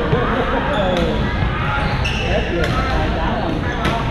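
Badminton rackets striking a shuttlecock in a rally: a few sharp hits, one to one and a half seconds apart, ringing in a large gym hall.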